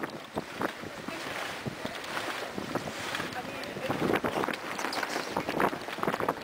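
Wind noise on the microphone with indistinct voices of a group of people hauling on a schooner's halyards.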